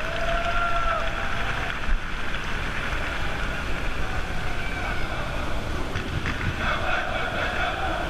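Wind buffeting the microphone with a steady low rumble, over faint, distant voices.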